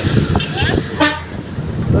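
Low rumble of a moving truck, with a short pitched horn toot about a second in.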